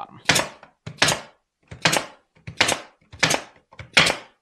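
Pneumatic 18-gauge brad nailer firing 1-inch nails into cedar pickets: six sharp shots in steady succession, a little under a second apart.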